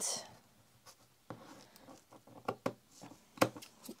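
Tim Holtz scissors snipping through lace curtain fabric in a run of short, irregular snips.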